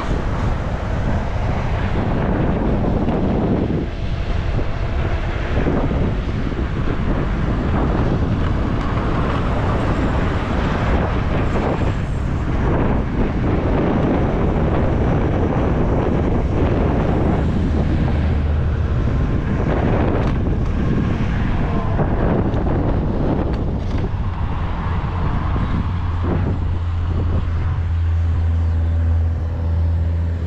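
Wind rushing over the microphone with road noise from riding at speed on an electric micro-mobility vehicle through car traffic. A strong steady low hum comes in near the end.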